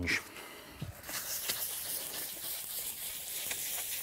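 Fine sanding sponge rubbed lightly back and forth over a glazed ceramic tile, a steady scratchy hiss starting about a second in. It is taking the shine off the glaze before painting.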